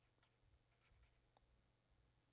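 Near silence with the faint scratching of a pen writing on paper in short strokes.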